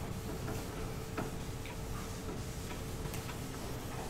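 A chalkboard eraser wiping across a blackboard: a faint rubbing with a few soft, scattered ticks.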